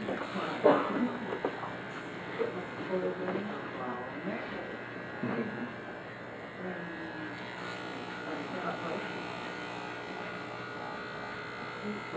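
Electric hair clippers with an adjustable lever and a number two guard running with a steady buzz as they cut and blend short hair, working out a line of demarcation.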